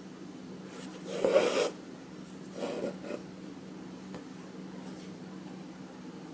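Embroidery floss being drawn through fabric stretched in a hoop: two rasping pulls of the thread, the first and louder one about a second in, the second shortly after, over a faint steady hum.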